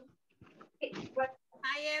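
Speech over a video call: short faint voice sounds about a second in, then near the end a woman's drawn-out greeting begins.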